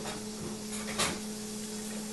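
Two short light clicks about half a second apart, over a steady low hum and faint hiss of household background noise.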